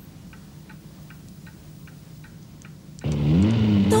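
A clock ticking steadily in a quiet room, about three ticks a second. About three seconds in, a loud, steady low drone starts suddenly, rising briefly in pitch and then holding.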